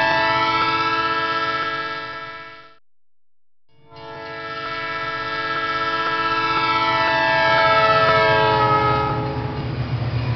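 Train whistle, a chord of several steady tones over the low rumble of the train, fading out under three seconds in. After about a second of silence it builds again, peaks, and gives way to the rumble near the end. This is a Doppler-effect demonstration: the train first runs toward the listener, then away from the listener with the whistle lowered in pitch.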